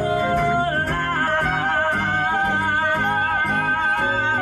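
A live small jazz band playing a swing tune: a long held note with vibrato sustains from about a second in, over a plucked bass line and light drums.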